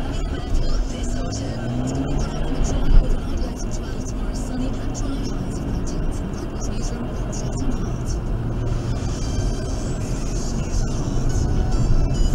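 Car engine heard from inside the cabin, rising in pitch in steps as the car pulls away and speeds up, over steady road noise. A car radio plays music and talk over it.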